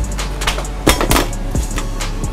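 Metal spatula and metal serving tray clinking and scraping together as grilled fish is lifted off for plating, with a few sharp clinks about a second in, over background music.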